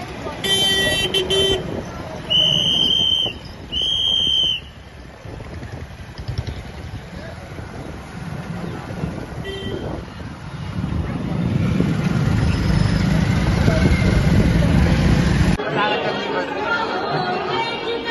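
Vehicle horns honking on a busy road: a short honk about half a second in, then two longer honks in the next few seconds and a brief toot around ten seconds. A low traffic and wind rumble builds in the later part and cuts off suddenly, followed by crowd chatter.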